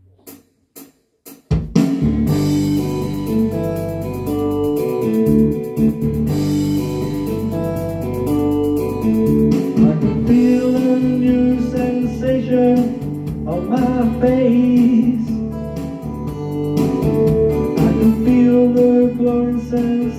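A few short count-in clicks, then about a second and a half in, an amplified electronic keyboard starts an instrumental intro: a melody line over a full band accompaniment of drums, bass and guitar.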